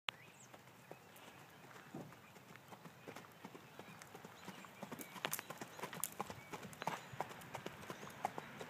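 Hoofbeats of a Tennessee Walking Horse on gravel and dirt at its gait, a quick, uneven run of clip-clops. They grow louder as the horse comes closer.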